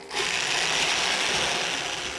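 Corded electric drill with a quarter-inch bit boring through a cardboard box and the styrofoam insulation liner inside it. The drilling sound is steady and noisy, starting just after the beginning and easing off slightly towards the end.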